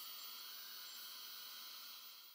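Faint steady hiss, mostly high-pitched, with a few faint thin steady tones in it and nothing else.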